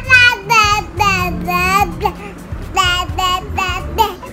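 Baby babbling: a string of high-pitched, drawn-out sing-song vowel calls that rise and fall in pitch, with a short pause a little after the middle before three more calls.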